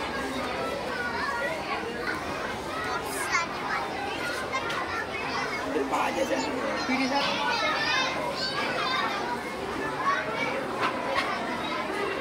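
Many children talking at once, a steady hubbub of overlapping young voices with no single speaker standing out.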